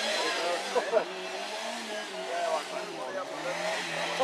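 Rally car engine running hard, a steady drone under excited spectators' shouts, with a loud cry just under a second in.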